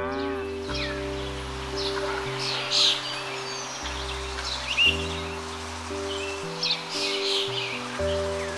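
European robin singing high, varied chirping phrases in several bursts, the loudest about three and five seconds in, over background music of slow, sustained chords.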